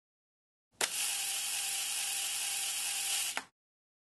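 A sharp click, then a steady, hissy mechanical whirr lasting about two and a half seconds, ending in another click.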